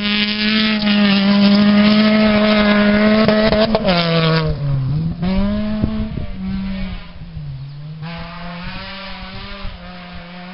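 Peugeot 206 rally car engine held at high, steady revs as the car passes close on gravel. About four seconds in the revs drop, then climb again, dip once more and fade as the car pulls away into the distance.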